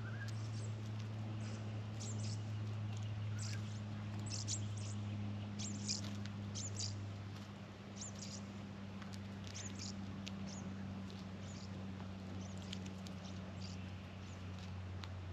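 Australian magpies foraging in loose straw: irregular short, crisp rustles and pecks as their bills probe and snatch roaches, over a steady low hum.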